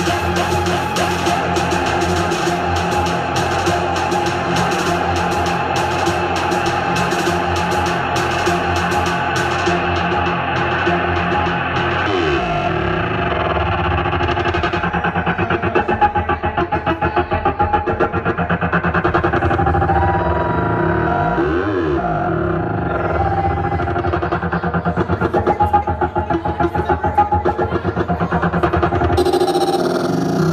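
Electronic dance music played live from a DJ controller, with a fast high ticking beat over a dense, distorted mix. About ten seconds in the treble drops away, and rising and falling sweeps run through the rest.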